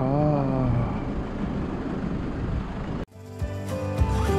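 Street noise, with a brief voice near the start, cuts off suddenly about three seconds in. Background music with steady held notes follows.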